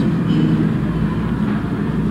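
A steady low rumble of background noise with no speech, its energy sitting in the low range.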